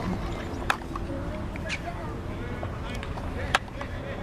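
Distant shouts and calls of rugby players across an open pitch over a steady low rumble, with two sharp clicks, one about a second in and one near the end.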